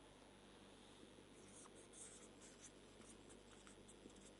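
Faint strokes of a marker pen writing on a whiteboard: a run of short scratchy squeaks starting about a second and a half in, over near-silent room tone.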